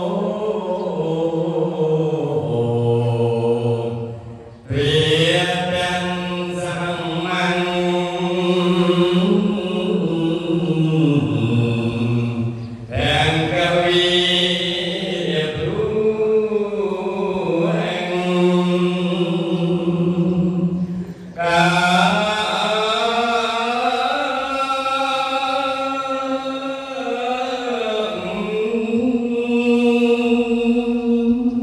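A man chanting Khmer Buddhist verses into a microphone. He sings long, drawn-out melodic phrases in a single voice, and pauses briefly for breath about four, thirteen and twenty-one seconds in.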